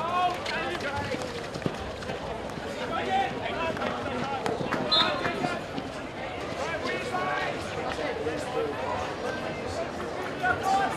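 Players shouting and calling to each other across a field hockey pitch, with a few sharp clicks of sticks hitting the ball and a brief high whistle-like tone about five seconds in.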